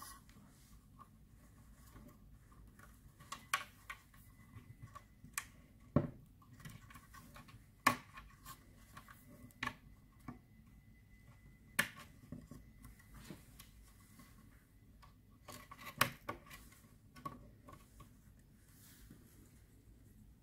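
Small metal parts being handled on a propeller's pitch-control linkage: scattered sharp clicks and taps, a second or more apart, as a small pin and cotter pin are fitted through the link rods.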